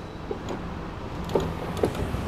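Mitsubishi Outlander Sport PX engine idling with the air conditioning on: a steady low hum, with a couple of faint clicks in the second half.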